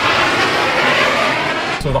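Jet-airplane flyby sound effect: a loud, steady rush of noise that swells a little and cuts off suddenly near the end, where a man starts to speak.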